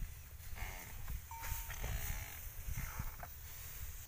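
Farm animals giving a few short calls over a steady low rumble.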